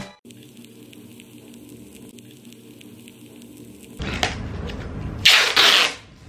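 Faint room tone, then from about four seconds in, rustling cardboard and a loud rip of packing tape being pulled off its roll, lasting under a second.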